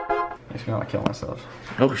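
Electronic dance music with a heavy beat cutting out within the first half second, followed by a man's voice, with a sharp click about a second in.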